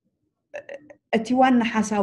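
Speech only: a woman talking in Tigrinya, starting after a brief pause and running on without a break from about a second in.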